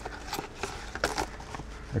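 Plastic cling wrap being pulled from its box and stretched over a metal sheet pan: faint crinkling with a few light taps and clicks.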